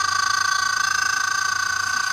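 Talking Annoying Orange toy playing a long, steady, high-pitched cartoon voice sound through its small speaker, held on one note with a fast flutter.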